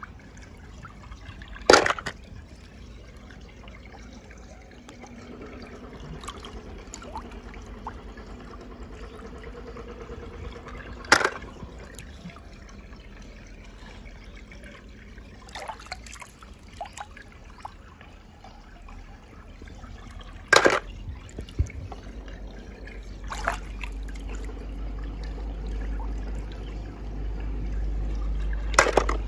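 Die-cast toy cars dropped one by one into swimming-pool water, each hitting with a sharp splash about every nine seconds, over a steady trickle and slosh of water. A few smaller splashes fall between them, and a low rumble builds near the end.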